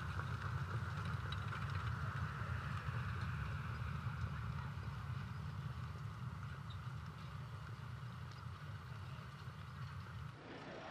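Steady open-air racetrack ambience, a low rumble with a hiss above it, slowly fading over the seconds after a harness race's finish.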